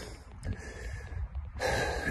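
A man's sharp intake of breath near the end, over a low steady rumble on the phone's microphone.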